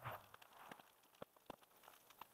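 Near silence, with faint irregular crackles and clicks from a burning debris pile.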